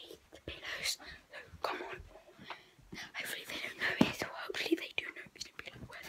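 A girl whispering, with short knocks and rustles as the handheld phone is moved about.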